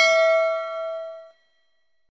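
Notification-bell chime sound effect: a single metallic ding that rings with several clear tones and dies away about a second and a half after it is struck.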